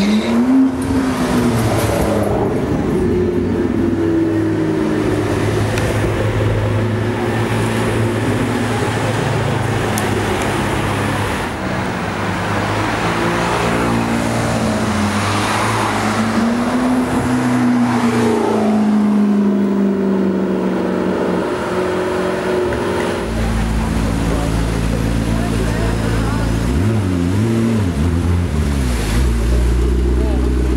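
McLaren MP4-12C twin-turbo V8 accelerating past, its pitch rising and then falling, once right at the start and again for several seconds around the middle. A steady low engine hum runs underneath and gets stronger near the end as the car sits close by, with people's voices in the mix.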